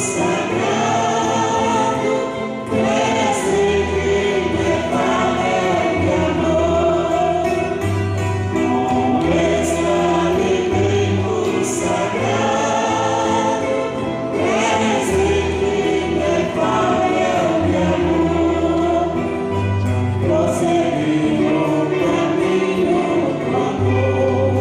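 Choir singing a hymn over a steady accompaniment of long held low notes that change every second or two.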